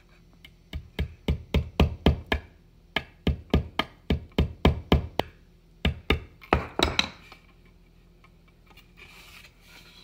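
Claw hammer tapping the tip of a small metal eye screw into a painted wooden picture frame to start a pilot hole: quick light strikes, about four a second, in three runs with short pauses, stopping about seven seconds in.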